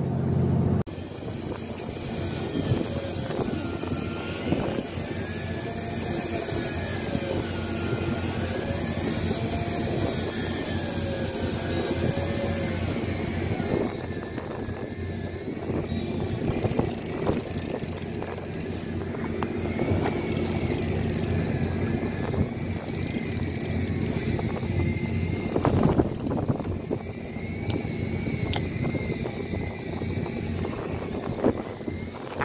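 A fishing boat's engine running steadily with the wash of sea water, under a faint whine that wavers up and down in pitch.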